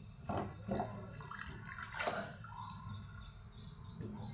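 A small bird chirping in a quick, even series of high chirps, about three a second, starting about halfway in.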